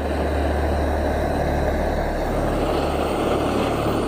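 Handheld gas blowtorch burning with a steady rushing noise, its flame played on a lump of limestone to heat it.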